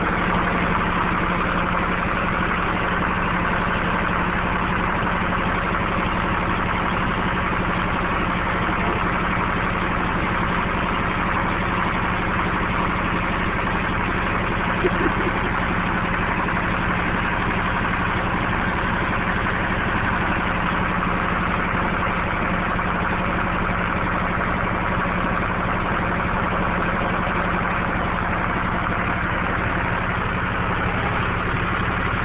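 An engine running at a steady, unchanging idle, with a constant low hum. There is one brief louder blip about halfway through.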